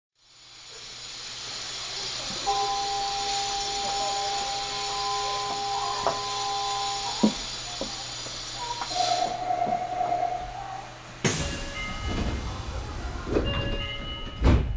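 A Nagoya subway 5050-series train standing with the loud steady hiss of the train's equipment, thin whining tones and a low hum for about nine seconds. Steady tones, then a warbling tone, sound over it, and a loud clunk comes about eleven seconds in, followed by short stepped tones.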